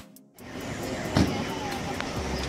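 Wind buffeting a phone's microphone outdoors: a steady rough rushing noise with a low rumble, starting about half a second in after a brief hush.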